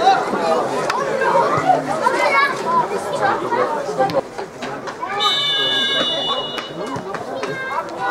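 Spectators talking and chattering close by. About five seconds in, a high shrill whistle sounds for about a second, then briefly again near the end.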